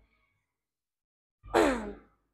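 Near silence, then about one and a half seconds in a short voiced sigh that falls in pitch.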